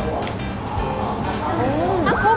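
Background music of an edited variety show; near the end, a sliding, rising pitched sound effect begins.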